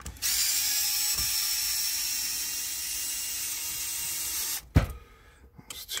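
Cordless electric screwdriver running steadily for about four and a half seconds, backing out a hand-loosened chassis screw on an RC car, then stopping, followed by a single sharp knock.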